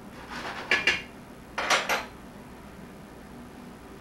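A cooking utensil scrapes and knocks against a frying pan as shrimp are stirred. There are two short bursts in the first two seconds: the first ends in two sharp knocks, the second is a single scrape and clatter.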